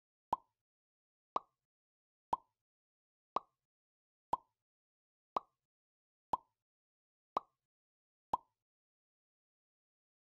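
Countdown timer sound effect: a short tick once a second, nine ticks evenly spaced, marking each second as the clock counts down.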